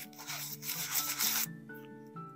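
A brush scrubbing a coin in soapy lather, a dense scratchy rubbing that stops about one and a half seconds in.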